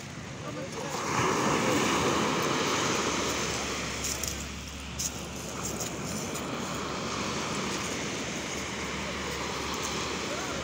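Small sea waves breaking in the shallows and washing over the sand, swelling loudest from about one to four seconds in, then settling to a steady wash.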